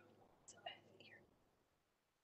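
Near silence with a brief, faint snatch of a person's voice about half a second in, over a video-call connection.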